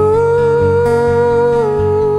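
Male voice holding a sustained wordless "ooh" over acoustic guitar accompaniment. The held note steps down slightly a little past halfway.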